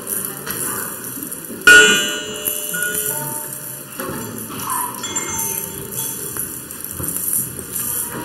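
Experimental electroacoustic music: live double bass processed in real time through Kyma, giving sparse metallic, bell-like ringing tones. A sudden loud struck sound comes about a second and a half in and rings away, followed by a few softer attacks.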